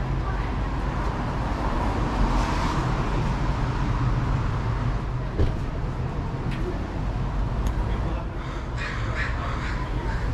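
City street ambience: a steady low rumble of traffic, with a crow cawing near the end.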